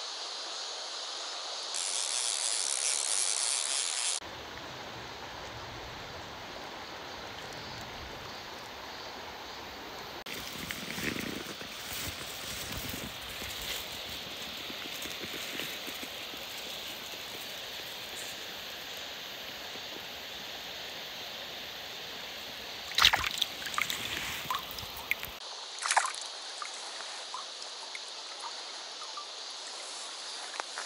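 Shallow river water running steadily, with sloshing from handling a cherry salmon in a landing net. A cluster of sharp knocks and clicks comes about three-quarters of the way through.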